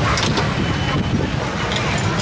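Steady low rumble of street traffic, with a few light clinks of metal kitchen utensils, once shortly after the start and again near the end.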